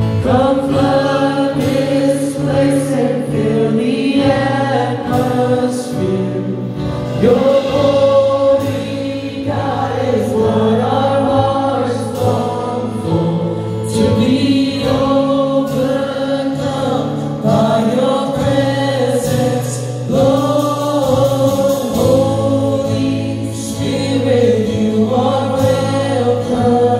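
Live contemporary worship music: voices singing a slow melody together over acoustic guitar and band. A steady low bass line runs beneath, with regular drum and cymbal hits.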